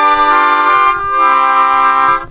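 Melodica playing two sustained chords, the second taking over about a second in: a perfect cadence, a G chord resolving to a C chord.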